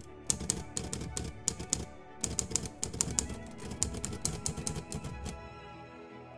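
Typewriter-style keystroke clicks in quick, irregular runs, a sound effect typing out on-screen text, over background music. The typing stops near the end.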